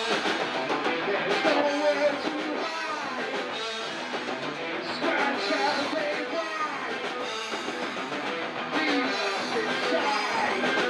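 Live rock band playing: electric guitars, bass guitar and drum kit, with a singer's vocals over them.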